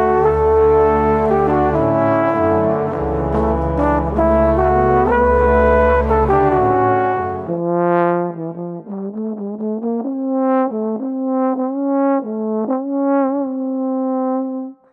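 A music track with a deep bass line and brass for the first seven and a half seconds. It then gives way to a solo slide trombone playing an unaccompanied melody of short, separate notes.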